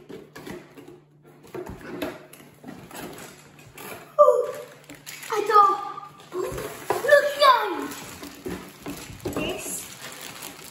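Children's voices exclaiming in short high bursts, loudest from about four seconds in, over light handling noises of a cardboard kit box and its plastic-wrapped contents being unpacked.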